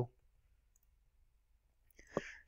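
Near silence: quiet room tone with a faint click just before the end.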